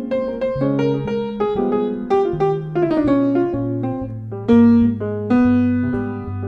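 Jazz trio of grand piano, electric guitar and electric bass playing a slow jazz ballad, the piano's melodic lines to the fore in a run of quick notes over sustained electric bass notes, with a louder chord about four and a half seconds in.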